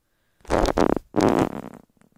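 A person's voice drawn out in a low, creaky rasp (vocal fry): a long "So..." and then a second rough syllable.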